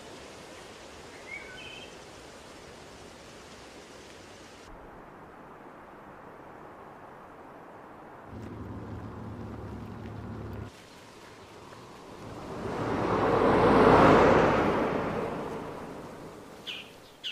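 Steady open-air ambience, with a low hum for a couple of seconds past the middle. Then a vehicle passes by on a road: its noise swells to a peak about two seconds before the end and fades away.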